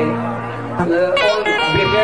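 A man singing long, wavering notes into a microphone, with plucked-string music behind the voice.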